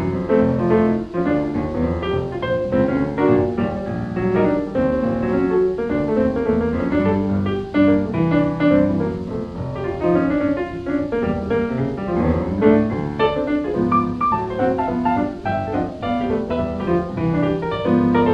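1920s jazz piano music playing a brisk, busy melody with many quick notes.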